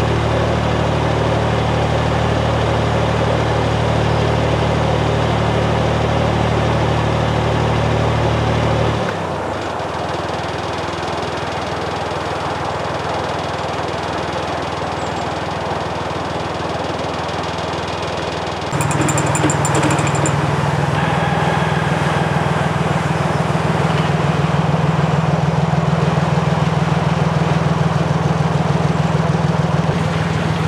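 Narrowboat's diesel engine running steadily at low revs. Its level drops abruptly about nine seconds in and rises again about two-thirds of the way through.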